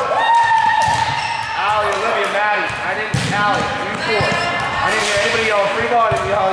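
Athletic shoes squeaking on a gym floor as volleyball players move, with a few sharp smacks of the ball being hit and players' voices calling out.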